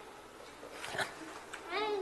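Quiet room tone in a pause, then near the end a brief high-pitched vocal whine that rises in pitch.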